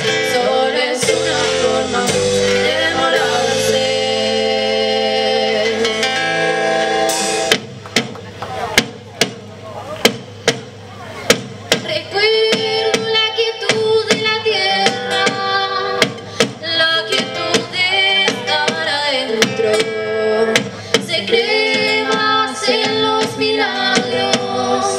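Live band music with sung vocals, electric and acoustic guitars, keyboard and drum kit. About seven and a half seconds in, the full sound drops back to sharp drum hits under the singing, and it fills out again near the end.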